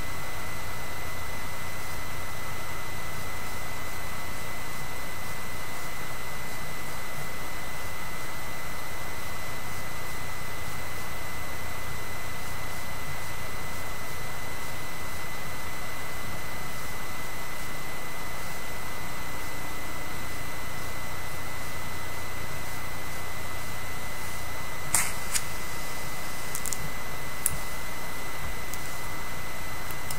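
Steady background hiss with a low hum and a thin, constant high-pitched whine: room tone and recording noise. Two short clicks come near the end.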